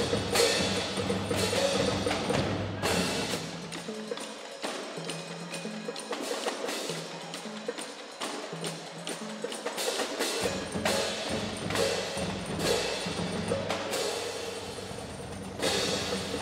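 A rudimentary percussion band begins playing at once: drums and cymbal crashes over ringing pitched percussion, with low tuned notes stepping up and down beneath. Loud cymbal crashes come at the start, about three seconds in and near the end.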